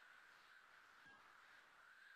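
Near silence: faint room tone with a steady low hiss.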